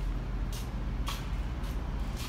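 Footsteps of someone walking along a station platform, about two steps a second, each a short scuffing hiss, over a steady low rumble.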